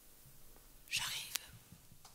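A woman's soft, breathy whisper into a stage microphone about a second in, followed by a small click, in a hushed pause.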